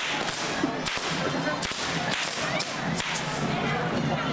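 Fireworks on a festival dragon figure going off: a continuous hiss from spark-spraying fountain fireworks, with several sharp cracks.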